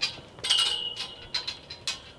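Steel livestock gate panels and chain clanking: several sharp metallic clinks that each ring briefly, the loudest about half a second in.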